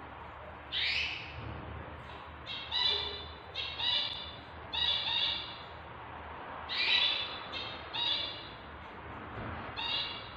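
Newborn kittens mewing: short, high-pitched squeaky cries in quick clusters, beginning with one rising cry about a second in and repeating every second or so.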